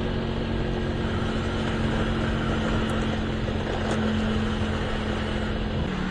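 Steady engine hum with road and wind noise from a vehicle cruising along a city street; the engine note stays even, growing slightly louder about four seconds in.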